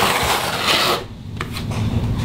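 A hand trowel scraping across wet thinset mortar on a floor, a steady rasping that stops abruptly about a second in, followed by a few faint clicks over a low hum.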